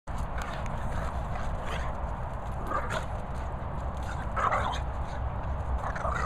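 Two Boston Terriers play-fighting, giving short growls and barks in bursts about a second apart, the loudest a little past the middle.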